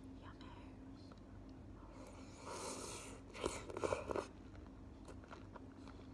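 A bite into a juicy pineapple spear, a cluster of wet crackling snaps about three and a half seconds in, followed by faint chewing.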